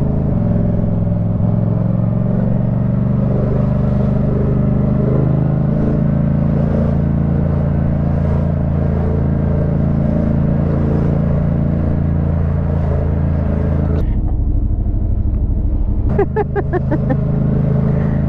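Yamaha MT-07's 689 cc parallel-twin engine running steadily at low speed, heard close up from the rider's helmet. About fourteen seconds in there is a sharp click, then a louder low noise for about two seconds. A short laugh follows near the end.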